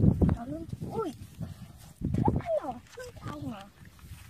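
Children's voices in short, untranscribed calls and exclamations with rising and falling pitch, in two louder bursts, one at the start and one about halfway through, then quieter.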